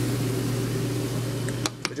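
Saltwater aquarium protein skimmer running, a steady low pump hum over the rush of its bubble-filled chamber. Near the end the hum drops away and a few light clicks sound as a hand handles the skimmer's lid.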